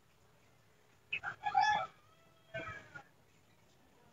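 An animal crying out twice in short pitched calls, the first longer and louder, the second a moment after it.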